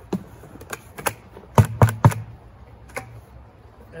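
A plastic bucket being emptied of damp espresso grounds into a broadcast spreader's plastic hopper: a string of sharp knocks and thuds as the bucket and clumps of grounds hit the hopper. The loudest are three knocks in quick succession about a second and a half in.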